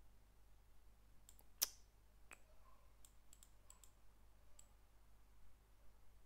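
Faint, scattered clicks of a computer mouse while a slider is being dragged, about ten in all, the loudest about a second and a half in.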